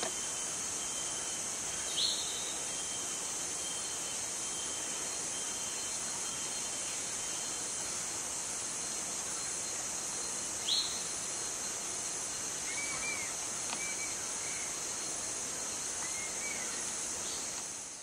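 Forest ambience: a steady high-pitched insect drone, with a few short bird chirps scattered through it, about two seconds in and again near the middle, and some soft arched calls later on. It fades out at the very end.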